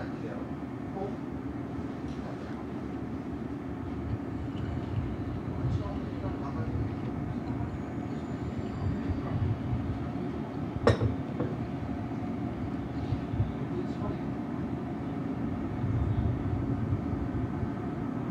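Steady low rumble of room noise in a yakiniku restaurant, with faint voices in the background. A single sharp knock comes about eleven seconds in.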